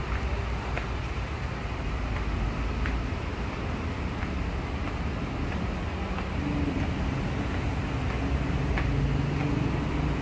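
Steady low rumble of an elevated rail station's ambience, with a few faint ticks. About six seconds in, a low steady hum comes in and grows a little louder.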